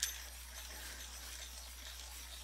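Coloured pencils being handled: a sharp clink right at the start, like a pencil set down against another, then a light steady scratchy rustle.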